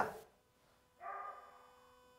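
Steady low electrical hum. The last word of a man's voice trails off at the start, and a faint, brief pitched sound comes about a second in.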